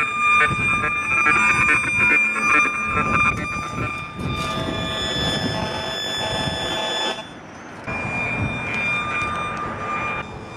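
Electromagnetic-radiation detector turning the fields of rooftop cell-tower antennas into sound: a mix of steady electronic tones at several pitches with a rapid stuttering buzz. The tones change about four seconds in, drop out briefly about seven seconds in as the detector moves, then come back at new pitches.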